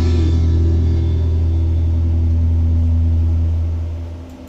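Closing chord of a karaoke backing track: a deep, steady bass note with a few higher notes held over it, fading out near the end.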